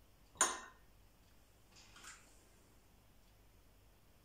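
An upturned drinking glass set down into a glass bowl of water: one sharp glass-on-glass clink shortly after the start, then quiet with a faint rustle about two seconds in.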